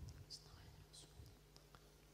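Near silence: a faint, steady low hum with two brief, faint high hisses.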